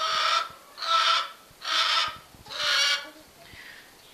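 A domestic fowl gives four loud, harsh, raspy calls at an even pace of about one a second.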